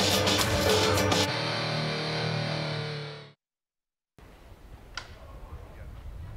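Short music sting, a distorted electric guitar: a few hits, then a held chord that fades and cuts off about three seconds in. After a second of silence comes a faint outdoor background with a sharp click.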